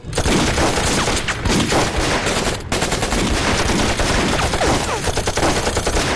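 Dense battle gunfire: rapid rifle and machine-gun fire, many shots overlapping. It starts abruptly and breaks off briefly a little over two and a half seconds in.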